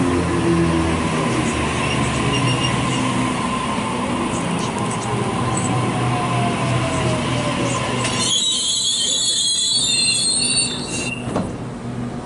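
Waratah Series 1 electric multiple unit braking into a platform: a falling whine as it slows, then a high-pitched brake squeal for about two seconds that cuts off as the train comes to a stop.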